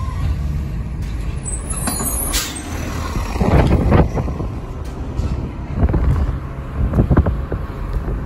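Steady low vehicle rumble heard from inside a car, with a short sharp air-brake hiss from a garbage truck about two seconds in. In the second half, heavy irregular gusts of wind buffet the microphone.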